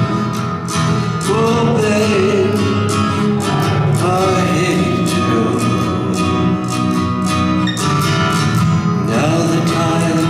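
Live folk performance: a man singing with a steadily strummed acoustic guitar.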